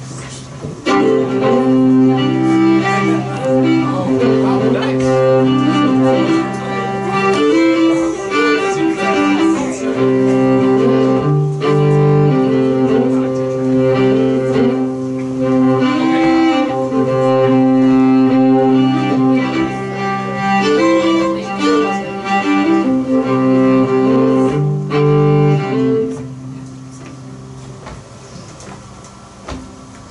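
A string band playing an instrumental opening led by a bowed fiddle: long held notes moving over a steady low drone. The playing drops to a much softer level about 26 seconds in.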